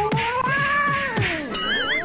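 A cat's long, drawn-out yowl that wavers slowly in pitch and fades about two-thirds of the way in, over added music; near the end a warbling, trilling sound comes in.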